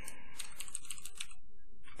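Typing on a computer keyboard: a quick run of keystrokes through the first second or so, then it stops.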